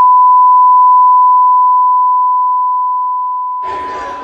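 A single steady pure beep tone, a censor bleep laid over and muting the fans' shouting. It starts suddenly at full loudness and fades gradually over the last few seconds as the crowd noise comes back underneath.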